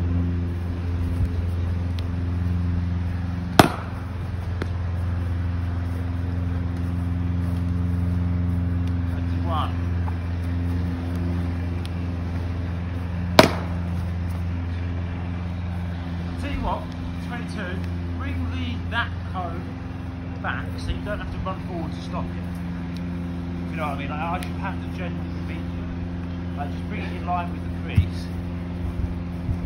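Cricket bat striking a cricket ball twice, two sharp cracks about ten seconds apart, over a steady low hum.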